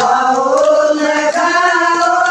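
A group of women singing a Haryanvi devotional bhajan together, their voices holding long, drawn-out notes.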